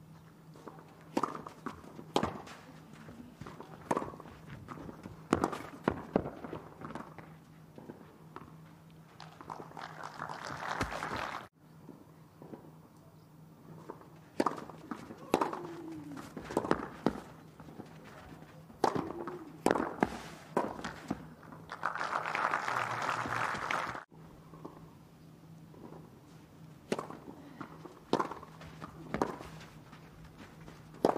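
Tennis ball struck back and forth by racquets in rallies on a clay court, a sharp hit about every second. Twice, spectators applaud after a point, and each burst of applause is cut off abruptly.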